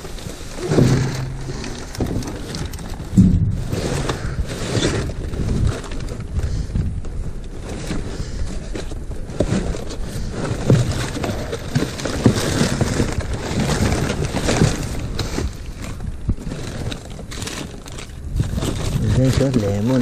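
Plastic bags and wrap crinkling and cardboard boxes scraping as gloved hands rummage through bagged produce, with an indistinct voice now and then.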